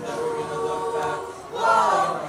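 Mixed high-school choir singing a cappella, holding a sustained chord, then coming in louder on a new phrase near the end.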